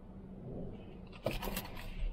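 Faint low rumble, then a little past halfway a quick cluster of scrapes and clicks as a person shifts about in a car's driver seat.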